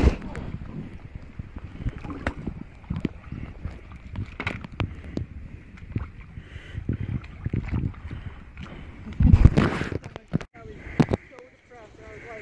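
Inflatable kayak being paddled: irregular knocks and rubbing of the paddle against the hull, with water movement. A louder thump comes about nine seconds in, followed by a few sharp clicks.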